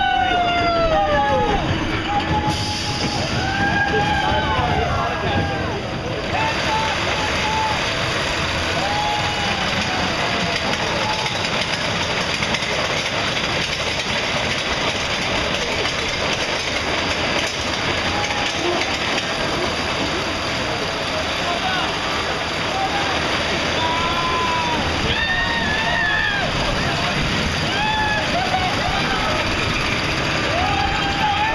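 Small roller coaster train running round its track with a steady rushing, rumbling noise, riders whooping and yelling over it in the first few seconds and again near the end.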